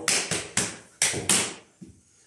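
Hand slaps on boot shafts and legs in a Roma men's dance slap sequence (csapás): five sharp smacks in about a second and a half, three then two, followed by a couple of faint taps.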